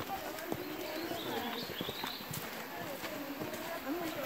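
Footsteps of several people walking on a dirt and stone trail, irregular and overlapping, with indistinct voices talking.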